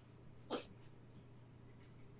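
A quiet pause with a faint steady low hum, broken by one brief sound about half a second in.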